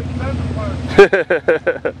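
Van engine running with its muffler knocked off, a steady low exhaust drone. About a second in, loud laughter breaks out over it in short rapid bursts.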